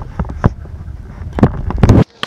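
Handling noise on the camera: a low rumble with a series of sharp knocks, the loudest two near the end.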